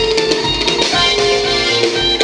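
Live band music played loudly through a stage sound system: a drum kit and an electric guitar over held notes.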